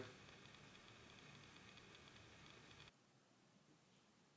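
Near silence: faint room tone that cuts off about three seconds in, leaving dead silence.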